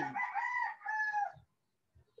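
A drawn-out, high-pitched bird call that wavers in pitch for about a second and a half, then cuts off.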